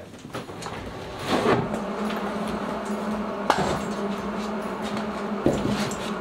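Husky 18-inch rolling tool bag being pulled away on its wheels: a steady rolling rumble lasting about four seconds, with a sharp click midway.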